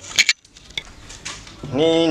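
A couple of quick, sharp metallic clinks about a quarter second in, then a man's voice saying a word near the end.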